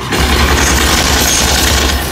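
A loud stage explosion effect that starts suddenly and carries on as a steady deep rumble and rush.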